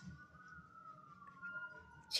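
Faint siren wailing, its pitch rising slowly and then falling again.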